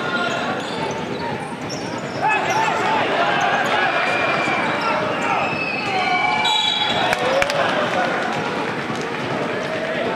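Game sounds from a hardwood basketball court: the ball bouncing and players' shoes on the floor over a steady crowd murmur in the hall, with one sharp knock about seven and a half seconds in.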